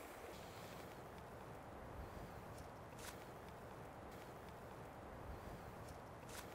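Near silence: a faint steady hiss of outdoor background noise, with a few soft clicks.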